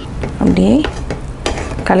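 Wooden spatula stirring and scraping a thick milk and milk-powder mixture in a nonstick pan as it cooks, with a light sizzle and one sharp click of the spatula about one and a half seconds in.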